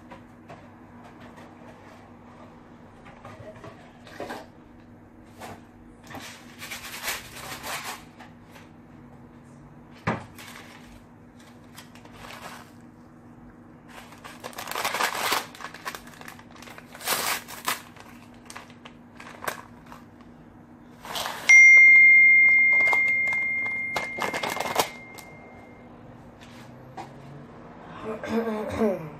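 Kitchen handling sounds while oatmeal is being made: scattered clicks, knocks and short rustling or pouring noises. About three-quarters of the way through comes a single loud bell-like ding that rings out and fades over about four seconds.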